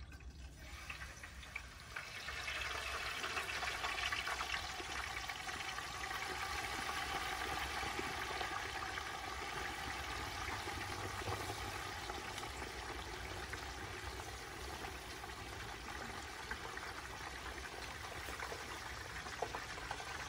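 Hot oil in a propane turkey fryer bubbling and sizzling as a whole turkey is lowered into it. The sizzle starts about two seconds in, is strongest for the next several seconds, then eases gradually.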